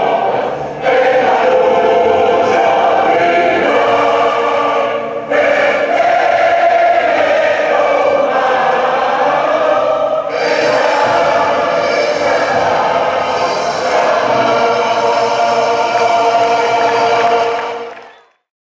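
A large crowd singing a song together in chorus with music, in long phrases with short breaks between them; the sound drops away at the very end.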